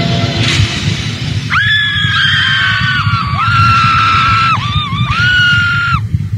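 Live concert music fades into a fan's very high-pitched screaming about a second and a half in. The scream is held in long, sustained shrieks with brief breaks, over the low rumble of the crowd.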